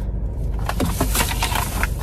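Scattered soft clicks and rustles from handling a newly bought tripod and its packaging inside a car, over a steady low cabin rumble.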